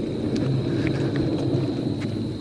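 Small air-filled caster wheels under a heavily loaded plastic trough of water beads, rolling over concrete: a steady low rumble with a few faint ticks.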